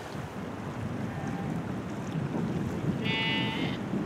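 Wind gusting over the microphone as a steady low rumble, with a sheep bleating once, briefly, about three seconds in.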